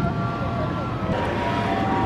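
Steady low rumble of city traffic, with a few faint steady tones above it.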